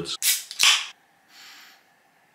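A ring-pull aluminium can of Thatcher's Haze cider snapped open: a sharp crack with a short hiss of escaping gas, a little over half a second in.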